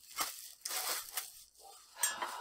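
Thin plastic bag crinkling and rustling as it is handled, in irregular bursts.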